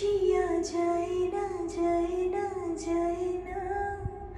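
A woman's solo singing voice holding long, slightly wavering notes of a Hindi film song, with short breathy consonants between phrases.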